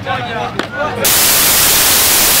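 People's voices from an onlooking crowd, with one sharp click. About a second in, a loud, steady static hiss cuts in abruptly and drowns everything.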